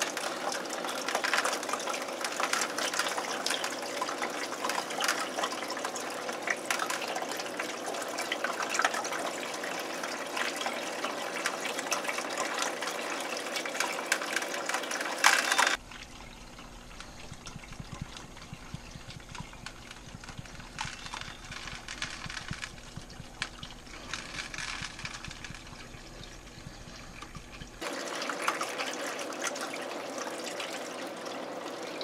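Steady rush of water through a wide aquarium siphon hose as it sucks sand and cyanobacteria slime off the tank bottom, draining into a bucket. About halfway through the sound drops quieter and a low hum appears beneath it, then it returns louder near the end.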